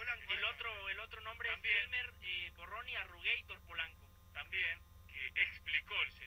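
A man's voice speaking Spanish over a narrow, tinny telephone line: a phone interview played back from a radio broadcast.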